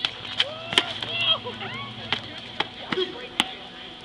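Sharp slaps and snaps of strikes and blocks from a two-person kung fu set, about seven of them spread unevenly, with short voice sounds between them.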